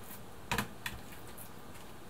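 A few light taps and clicks of food-prep handling on the kitchen counter, two close together about half a second in and one more just before a second in, over a faint steady hiss.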